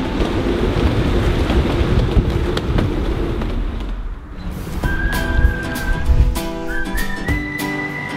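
Wind buffeting the microphone on a sailboat's deck in about 30 knots of wind, a dense low rumble, until it cuts out about four seconds in. About a second later intro music begins, with a held whistled tune over plucked strings.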